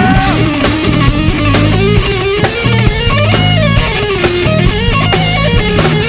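Live rock band playing an instrumental passage: an electric guitar lead with bending, wavering notes over bass guitar and drums with regular cymbal and drum hits.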